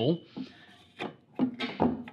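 A single short click about a second in, as a plastic wash-arm end cap is pushed into the end of a stainless steel dish machine wash arm, with quiet handling either side.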